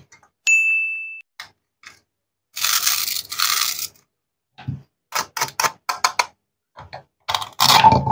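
Plastic toy fruit handled and cut apart with a wooden toy knife on a wooden board: two scraping rubs, then a quick run of sharp clicks and knocks, busiest near the end as the halves come apart. About half a second in there is one high bell-like ding that fades away.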